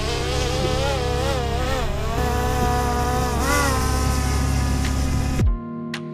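Small quadcopter drone's propellers whining as it lifts off, the pitch rising and then wavering up and down as it climbs, over a steady low rumble. About five and a half seconds in, the sound cuts off abruptly and electronic music begins.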